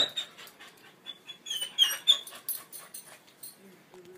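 A dog whimpering: a few short, high-pitched whines, bunched together from about one to two seconds in, with a few faint clicks.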